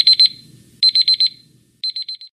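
Countdown timer's digital alarm beeping at zero: rapid high-pitched beeps in short groups of about five, one group roughly every second.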